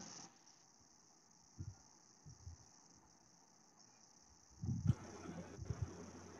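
Quiet pause with a faint, steady high-pitched hiss throughout, and a few soft low sounds about a second and a half in and again near the end.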